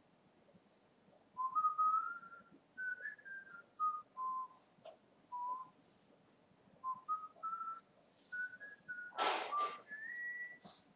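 A person whistling a tune: a string of clear held notes stepping up and down in pitch, beginning about a second in. A short burst of noise cuts in near the end.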